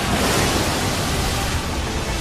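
Churning sea water crashing and rushing in a dense, steady wash of noise, like heavy surf.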